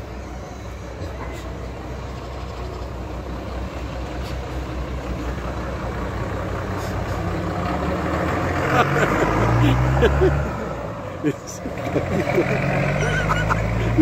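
A large passenger bus's engine running as it pulls out and drives past, growing louder to a peak about ten seconds in, then easing briefly before another engine rises near the end.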